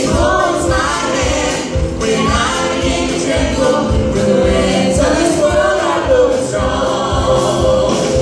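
Gospel song sung by a group of voices in harmony, over instrumental backing with a steady beat.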